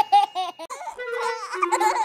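A cartoon baby's voice laughing in a quick run of short, evenly spaced bursts, followed by a few held musical notes in the second half.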